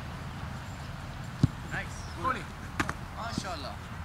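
A soccer ball being kicked once on the pitch, a sharp thump about a second and a half in, with players' shouts and calls across the field after it.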